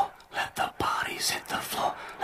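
A person's voice talking in quick short phrases, hushed close to a whisper.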